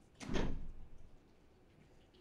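A single thump about a quarter second in, fading within half a second.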